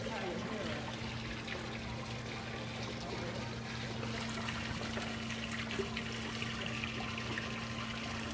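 Steady background wash of a large indoor space with a low, even hum and faint distant voices.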